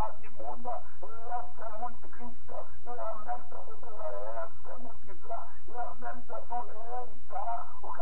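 A person's voice talking continuously, over a steady low hum.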